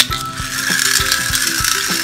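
Pull-back toy car released with a click, its wound spring motor whirring steadily as the wheels run across a tile floor.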